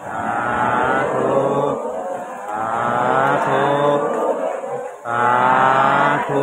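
A Buddhist monk chanting a Pali blessing (anumodana) in a low male voice, in long held, slowly gliding tones, with a short break for breath about five seconds in before the chant resumes.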